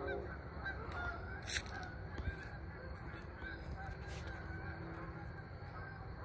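Geese honking faintly in the distance, short scattered calls over a low outdoor hum.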